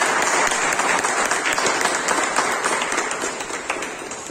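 Audience applauding, a dense clatter of many hands clapping that fades toward the end.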